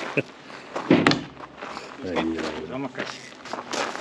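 Footsteps on gravel, with a few sharp scuffs, and a man's voice exclaiming "oi oi" about two seconds in.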